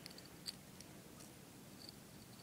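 Near silence with a few faint, sharp clicks of small metal parts being handled, a split ring worked through the hole in a bottle cap, the clearest about half a second in.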